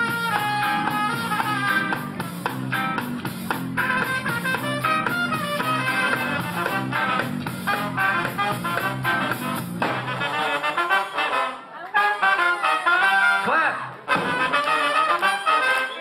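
Live ska band playing, led by a horn section of trumpet and trombones over a bass line. About two-thirds of the way in the bass drops out and the music breaks off briefly twice.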